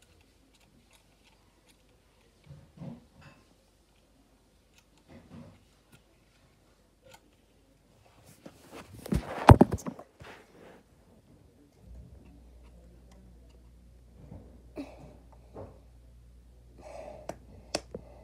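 Handling noise from a phone held close: scattered faint rustles and small knocks, then a loud cluster of rubbing and knocking about nine to ten seconds in as the phone is moved about. A low steady hum starts about twelve seconds in.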